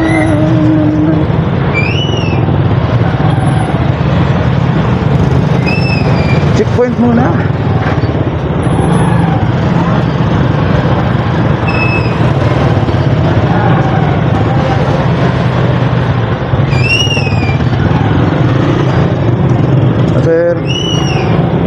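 Small motorcycle engine, a Honda XRM110 underbone, running steadily at low speed as it creeps through a queue, with a few brief high chirps now and then above it.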